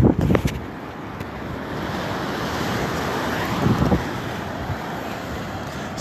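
Low surf washing up the beach, the rush swelling to a peak a few seconds in and then easing, with wind buffeting the microphone.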